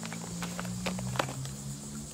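Crinkling of a plastic chip bag and crunching of popped-corn chips as a man digs into the bag and eats, with the sharpest crackles a little under and a little over a second in. A low, steady hum runs underneath.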